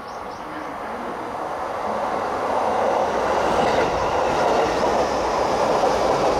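E233-series electric commuter train running in along the platform, its wheel-on-rail noise growing steadily louder over the first three seconds as it draws level, then holding.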